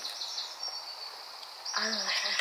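Quiet outdoor background with a steady high-pitched trill running throughout. A voice begins speaking near the end.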